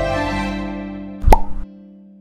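Logo jingle: held musical tones fading slowly, with a single short pop sound effect about a second and a quarter in.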